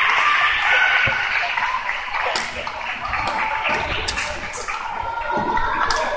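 Badminton rally in a large hall: rackets striking the shuttlecock in sharp, separate hits about a second apart, over the voices of spectators.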